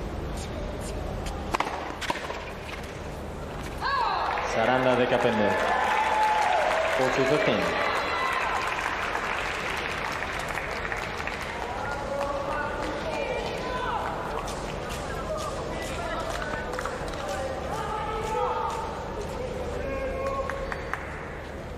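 Tennis crowd between points: many spectators shouting and cheering, loudest from about four seconds in and fading after a few seconds, with scattered shouts later. Two sharp knocks sound about two seconds in.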